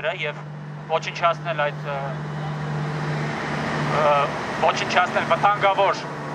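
A man speaking through a handheld megaphone in short phrases, with gaps between them. Underneath is street traffic: a vehicle passes, its noise swelling through the middle, over a steady low hum.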